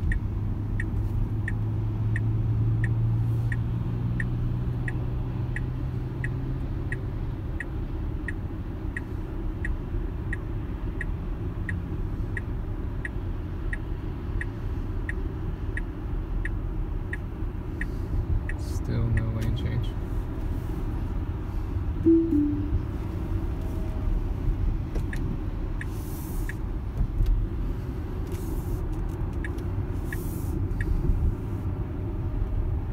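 Tesla Model X turn-signal indicator ticking steadily, about two ticks a second, signalling an Autopilot automatic lane change, over low road and tyre rumble inside the cabin. The ticking stops a little past halfway and starts again near the end.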